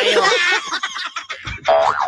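A comic studio sound effect with a wobbling, springy pitch, played over the broadcast talk, with a short held tone near the end.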